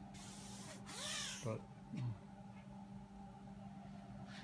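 Two short rustling hisses of handling in the first second and a half, over a faint steady hum.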